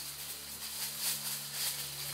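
Irregular dry rattling rustle of leaves and twigs as chimpanzees move about in tree branches.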